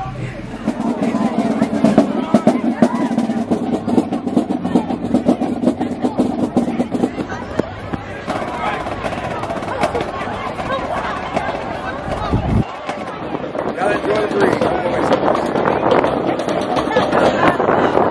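High school marching band playing, with a drumline of snare drums and brass, amid crowd voices. The sound changes abruptly about two-thirds of the way through.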